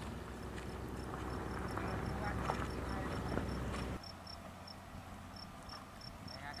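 Insects chirping in short, evenly repeated high pulses, growing faster and stronger in the second half, over the faint hoofbeats of a horse moving on a sand arena. A low rumble stops suddenly about four seconds in.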